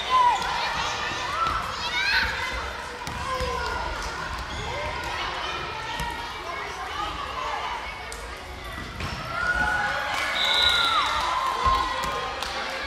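Children shouting and calling during a dodgeball game in a large sports hall, with a ball thumping and bouncing on the hall floor. The calls get louder near the end.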